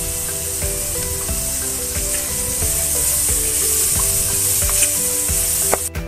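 Mixed vegetables frying in oil in a stainless steel pan, sizzling steadily while a wooden spatula stirs them with a few light knocks. The sizzle cuts off suddenly just before the end.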